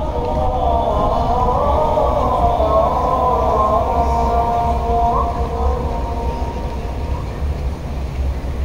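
Fajr call to prayer (adhan) sung by a muezzin over the mosque loudspeakers: one long, drawn-out melismatic note, wavering slowly in pitch and fading out near the end.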